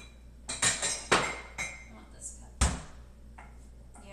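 Dishware clinking and knocking as it is taken out of a kitchen cabinet and set on the counter: a quick run of sharp clinks, then a heavier thump about two and a half seconds in as the cabinet door shuts.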